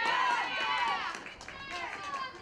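Several high-pitched girls' voices shouting and calling out over one another.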